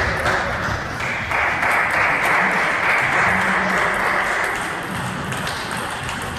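Table tennis balls ticking off bats and tables at the neighbouring tables of a sports hall, over a steady hiss.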